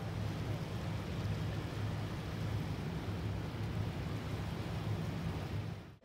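Steady low drone of a river cruise boat's engine, with a rush of wind and water over the open deck.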